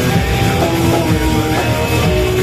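Death metal band playing live: distorted electric guitars holding riff notes over bass and drums, loud and dense.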